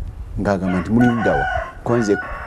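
A rooster crowing in the background, one long held crow starting about a second in, over a man's talk.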